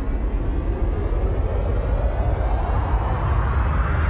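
Synthesized riser sound effect: a rushing noise sweep that climbs steadily in pitch over a deep, steady rumble, building tension.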